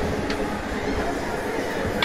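Steady low rumble heard from a moving Ferris wheel gondola, with faint background voices. A short click comes about a third of a second in.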